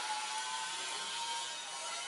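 Steady background hiss with a faint, thin high whine that fades out near the end.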